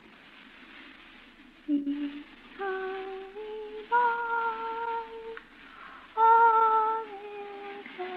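A woman humming a slow hymn tune without words, in long held notes that begin about two seconds in. The sound has the narrow, muffled quality of a 1940s radio-drama recording.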